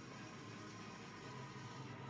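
Faint, steady background hum and hiss with no distinct event.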